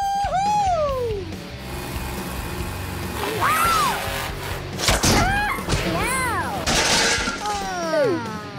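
Cartoon-style soundtrack over background music: a series of gliding, squealing voice effects rising and falling in pitch. A sharp crash with breaking, shattering noise comes about five seconds in, as the monster truck flips and wrecks.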